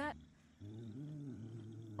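A low hum with a gently wavering pitch, starting after a short pause and lasting about a second and a half: the sound a character in the animated episode has just asked about.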